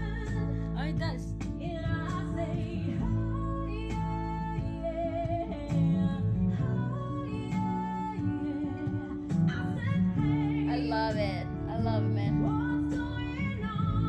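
A woman singing a pop-rock song as an acoustic cover, with strummed acoustic guitar and a small box drum (a mini cajón) keeping the beat.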